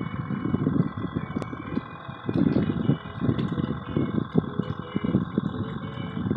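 Wind buffeting the microphone in uneven low rumbles, over a faint steady high-pitched whine.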